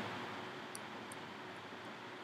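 Faint, steady room noise from a lecture recording, with a low hum and a couple of faint clicks about a second in.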